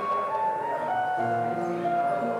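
Solo piano playing slowly: a melody of held single notes over sustained lower notes.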